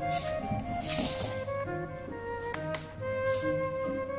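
Background music of short, stepping notes, with a brief rush of noise about a second in and two sharp clicks a little past the middle.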